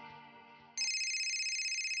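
Mobile phone ringtone: a repeating electronic tune that pauses briefly and starts ringing again about three-quarters of a second in.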